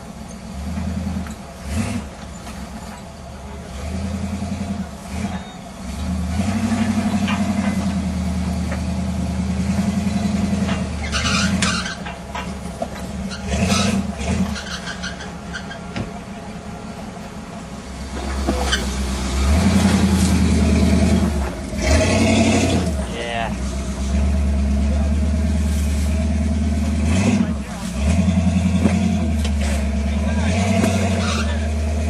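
Jeep Wrangler engine running at low revs as it crawls over rocks, swelling under throttle and easing off again.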